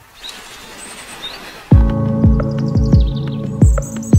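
Quiet outdoor hiss with two short bird chirps, then background music with a deep beat, about two beats a second, starts abruptly under two seconds in.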